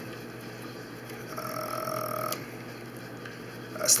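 Trading cards being leafed through by hand against steady room noise, with a short wordless hum from the man, about a second long, near the middle.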